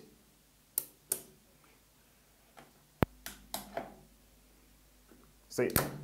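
AC contactor pulling in with one sharp clack about three seconds in as the start push button is pressed, starting the control circuit. A faint low hum stays on after it, and two lighter clicks come about a second in.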